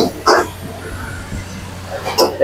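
A short, sharp, voice-like call about a quarter second in, then the steady hiss and hum of a gas wok burner and kitchen exhaust.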